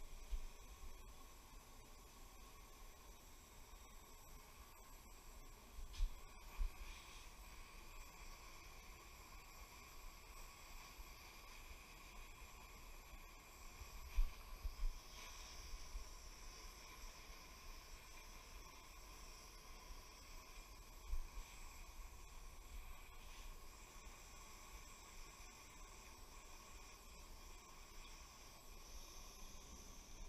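Propane torch on a Coleman canister burning with a faint steady hiss as its flame heats a turbo compressor wheel to expand it onto the shaft. A few soft knocks come about 6, 14 and 21 seconds in.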